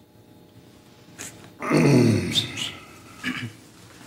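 A man's loud, guttural vocal noise, about half a second long, falling in pitch, a little under two seconds in. A brief click comes before it and a short, weaker sound comes near the end.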